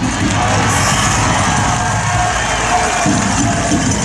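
Loud background music, steady throughout.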